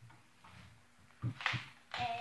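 A few dull knocks and a sharper thump about a second and a half in, from a padded seat being handled and bumped in a small boat.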